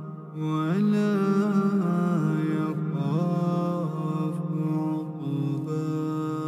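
Wordless vocal humming: a slow melody of long held notes that step to a new pitch every second or so, rising in after a brief dip at the start.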